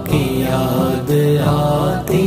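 A voice singing an Urdu devotional manqabat in long, drawn-out notes, with a short break about a second in.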